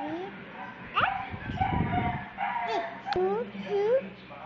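A series of short, high-pitched vocal sounds that rise in pitch, about half a dozen across a few seconds.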